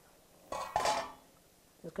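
Metal pot lid set down on a countertop: one brief clatter with a short metallic ring about half a second in.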